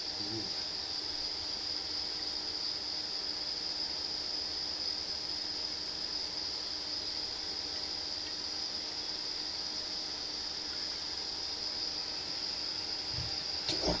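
A steady high-pitched whine or trill that holds one pitch throughout, over a faint low hum; a couple of knocks right at the end.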